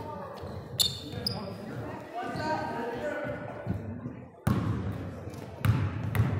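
A basketball bouncing on a hardwood gym floor, with sharp thuds about a second in and again near the end. Voices of players and spectators echo through the hall.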